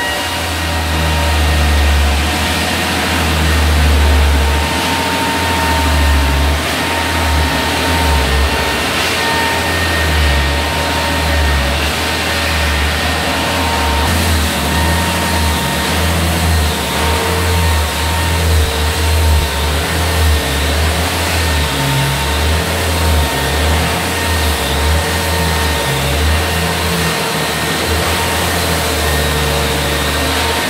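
Electric floor sanders running continuously on an old hardwood floor: a belt-driven drum floor sander, later a handheld edge sander worked along a step edge. A strong low motor hum wavers in level as the machine is worked, with a faint steady high whine over it.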